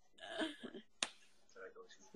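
A single sharp click about a second in, between faint, low voices.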